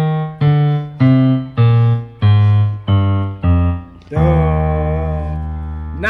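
Yamaha PSR-SX900 arranger keyboard in a piano voice playing a descending F-sharp major scale, eight single notes from do down to the lower do, the last one held for about two seconds.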